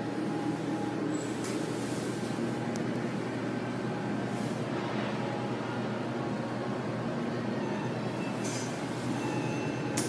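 Hydraulic elevator car travelling upward, heard from inside the car: a steady low hum and rumble with a few faint clicks.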